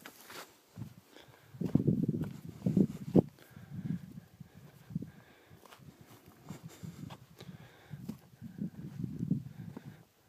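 Footsteps on sandstone slickrock and grit: irregular scuffs and knocks, busiest about two to three seconds in, with a sharp knock, and again near the end.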